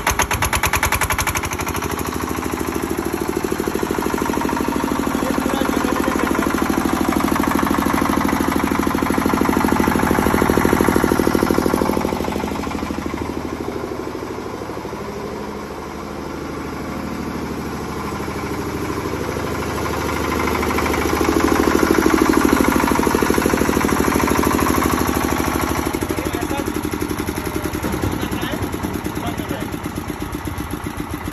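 Handle-start, air-cooled 10 kVA diesel generator set running steadily just after being hand-cranked, with a fast, even engine beat. It grows fainter in the middle and louder again as the microphone moves away from the set and back.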